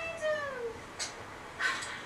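A cat meowing once, one long call that falls in pitch, followed by a short sharp noise about a second in.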